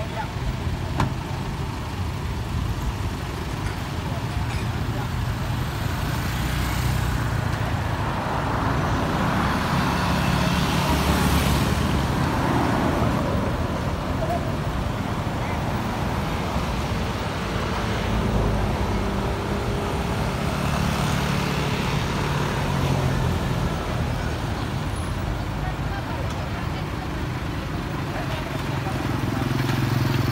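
Engines of police pickup trucks and a utility truck running at low speed in a slow convoy, with street traffic noise and indistinct voices.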